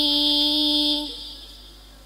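A woman singing a Javanese syi'ir holds one long, steady note that fades out about a second in, followed by a short pause between sung lines.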